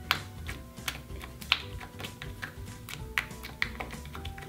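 A small blob of thick, borax-activated glitter slime squished and pressed between fingertips, making irregular sharp clicks and pops, several a second, over soft background music.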